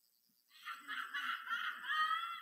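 Laughter from the congregation, starting about half a second in after a brief hush.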